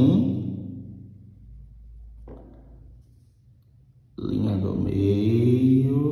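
A man's voice stretching sounds out in a chant-like, sing-song way: a short drawn-out syllable right at the start, a quiet pause, then a longer held note with a sliding pitch from about four seconds in.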